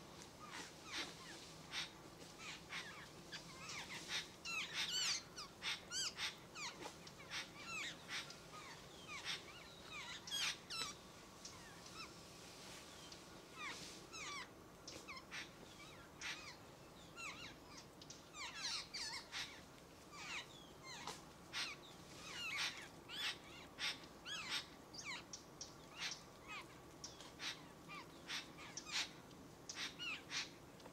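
Birds calling: a busy, continuous run of short, harsh chirps and calls, many of them quick pitch sweeps, overlapping from several birds.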